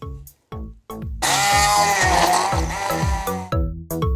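Background music of rhythmic plucked notes. About a second in, an electric stick blender runs for roughly two seconds over it, loud, its pitch sagging and recovering as it works through chopped fruit, kale and coconut water.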